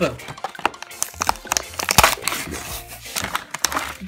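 Plastic blister pack and card backing of a diecast toy car being torn open by hand: a run of crinkling, crackling and tearing.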